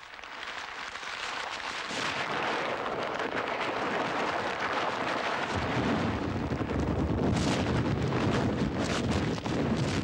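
Demolition of an old tenement building: a continuous rumbling crash of falling masonry that builds over the first couple of seconds, with a deeper rumble joining about five and a half seconds in as walls come down.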